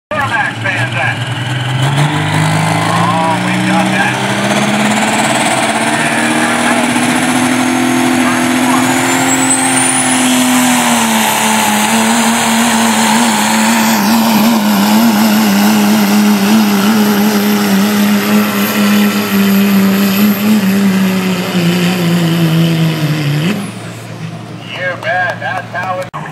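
Turbo-diesel pickup truck in a truck pull: the engine revs up while its turbocharger spools with a rising whistle, then runs hard under load dragging the sled, its pitch wavering, until it lets off and drops away shortly before the end.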